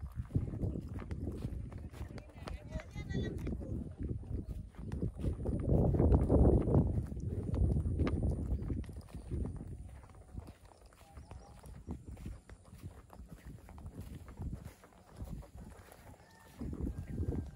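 Irregular footsteps and scuffs on a rough hillside path, with wind rumbling on the microphone, swelling strongest around the middle and easing off later.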